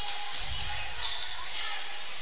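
Live gym ambience during basketball play: a basketball being dribbled on the court amid a steady murmur of crowd voices, picked up by the broadcast microphone.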